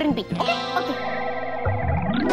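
A shimmering magic sound effect: a held, bright chord of many steady tones with a glittering top, with a lower tone entering near the end. It marks a spell conjuring a cold drink out of thin air.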